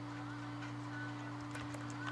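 Steady low electrical hum, with a few faint ticks about three quarters of the way through.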